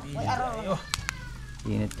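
A cat meowing, a wavering call in the first second. Two sharp clicks follow, and a man's voice starts near the end.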